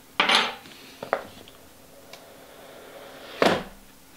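Small knife slitting the seals of a cardboard phone box: a short scraping cut about a quarter second in, a small click about a second in, then a louder scrape near the end as the box is opened.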